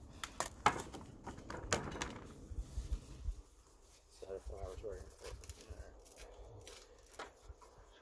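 Hands pressing and stretching pizza dough on an aluminium pizza peel: handling sounds of dough and fingers on the metal, with sharp clicks and taps in the first couple of seconds. A brief, faint voice is heard about four seconds in.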